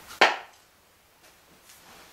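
A single sharp knock about a quarter of a second in, as a handheld tablet is put down, followed by a few faint small clicks.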